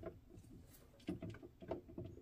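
A few faint plastic clicks and light knocks as the parts of a Kuvings REVO830 slow juicer are handled and fitted together in the juicing bowl.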